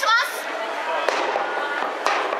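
A fan cheer starting a cappella: a cheer drum struck in sharp hits about a second apart over the steady noise of the crowd joining in.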